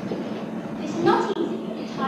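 Girls speaking lines on stage, a short burst of voice about a second in, heard through the steady hiss and hum of an old VHS tape recording.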